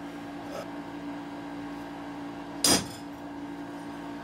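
Hammer striking a center punch on a 5160 leaf-spring steel knife blank clamped in a vise, marking pin-hole centers. There is a faint tap about half a second in, then one sharp metal strike near the three-second mark, over a steady low hum.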